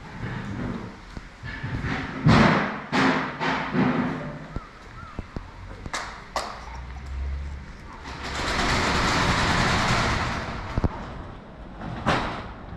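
Scattered knocks and thuds, with a couple of sharp clicks, then a rush of noise that swells and fades over about three seconds near the end.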